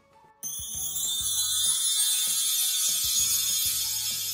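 Sound effect of an animated channel logo bumper: a bright, shimmering hiss starts about half a second in, over irregular soft low knocks and a few short notes, easing off slightly toward the end.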